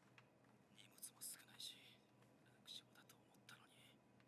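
Near silence with faint whispered speech: a few short, hissing s-sounds.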